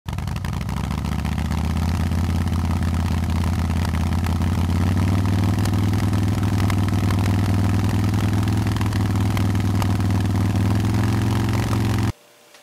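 Motorcycle engine sound effect: a deep, steady engine running that rises slightly in pitch over the first couple of seconds, then holds and cuts off suddenly at the end.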